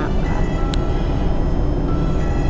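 City bus interior while driving: a steady low rumble of engine and road noise, with one short tick about a third of the way through.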